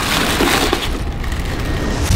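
Tissue paper rustling and crinkling loudly as football boots are lifted out of their shoebox.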